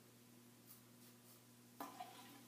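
Near silence over a low steady hum: a few faint scrapes of a safety razor blade cutting moustache stubble, then a short louder sound just before the end.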